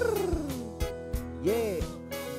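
Male singer's voice through a handheld microphone holding a note that slides downward, then a short sung "yeah" about a second and a half in, over a backing track with drum hits.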